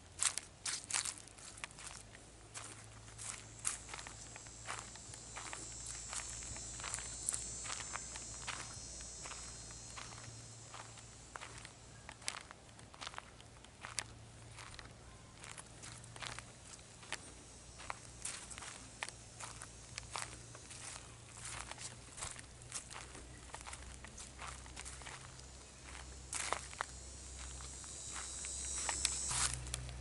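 Footsteps crunching on a gravel trail, step after step throughout. A high, steady insect drone from the trees swells twice, in the first third and again near the end.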